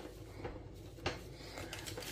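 Faint handling sounds at a kitchen counter: a couple of light knocks, the clearest about a second in, as a spice packet is handled beside a glass mug with a spoon in it.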